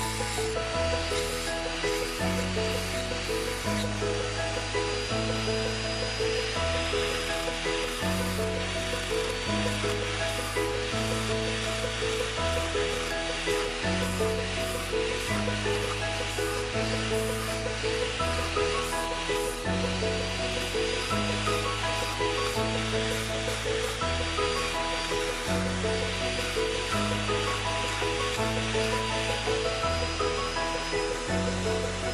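Background music with a steady bass line that changes note about once a second.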